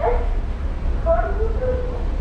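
Steady low rumble inside a running Indian passenger train carriage, with a passenger's voice heard briefly about a second in.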